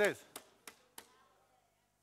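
Three sharp clacks of something struck by hand, about a third of a second apart, with a faint ring after the last: a deliberate noise standing for a 'loud gong or noisy cymbal', called annoying.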